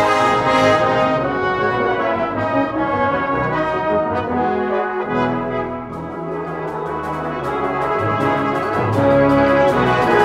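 Full brass band of cornets, horns, euphoniums, trombones and tubas playing a concert piece live. The sound gets quieter around the middle, then builds back up near the end, with short sharp percussive ticks in the second half.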